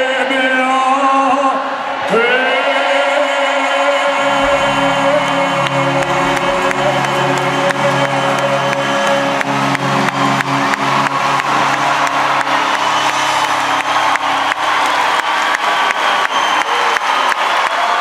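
Live pop band ending a song: the male singer's last phrase, then the band holds a long closing chord with a low bass note entering about four seconds in. Over the held chord an audience claps and cheers, with the clapping growing denser toward the end.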